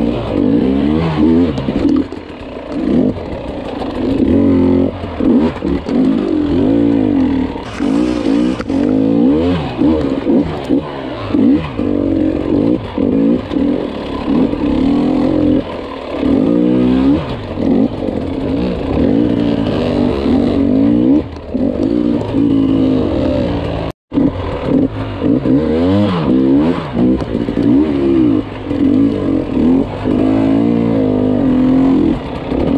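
Off-road dirt bike engine revving up and down over and over as it picks its way over rough, rocky ground. The sound cuts out for an instant a little past two-thirds of the way through.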